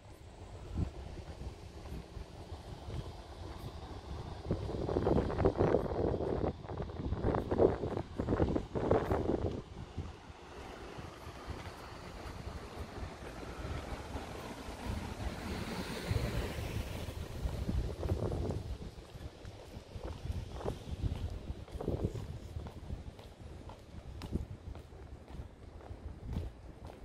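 Outdoor street ambience while walking: footsteps on a sidewalk and wind on the microphone, with a louder stretch of noise between about four and ten seconds in.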